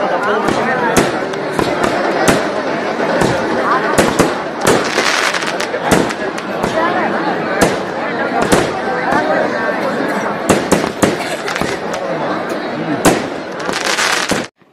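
Fireworks and firecrackers going off in irregular sharp bangs, one or two a second, over the dense, steady din of a large crowd's voices.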